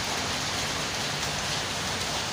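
Steady rain falling on wet pavement and parked motorcycles, an even hiss.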